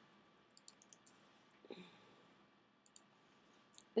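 A handful of faint, scattered clicks from a computer being worked with the pointer, and a brief soft voice sound about a second and a half in.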